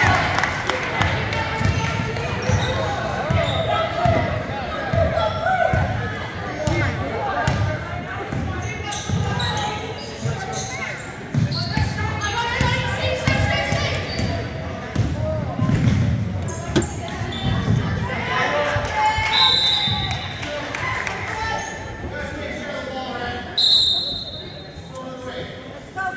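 Basketball bouncing on a hardwood gym floor as players dribble and run, over voices and chatter echoing in a large gym. A referee's whistle sounds twice in short blasts, about two-thirds of the way through and again near the end.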